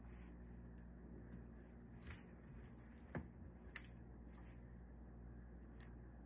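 Near silence: room tone with a steady low hum, and a few faint clicks and rustles as a small ribbon bow is handled.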